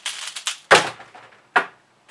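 Magnetic pyraminx being turned by hand: a quick run of small plastic clicks in the first half-second, then two sharper clacks less than a second apart.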